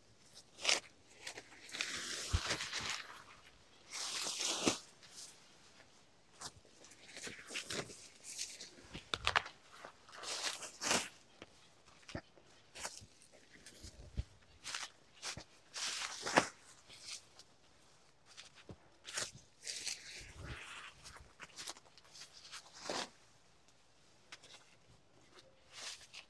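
Large banana leaves rustling and swishing as they are dragged and thrown down, in a series of separate swishes of about a second each, with footsteps crunching through undergrowth and cut leaves.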